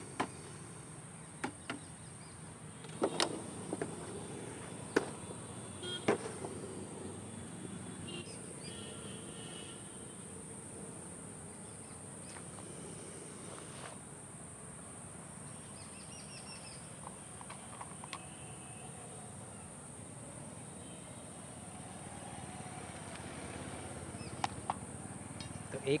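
Steady high-pitched drone of crickets, with a few sharp clicks and knocks in the first six seconds.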